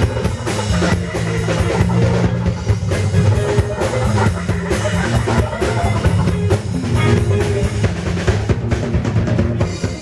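Live rock band playing an instrumental passage, the drum kit most prominent over bass guitar and keyboards, with no singing.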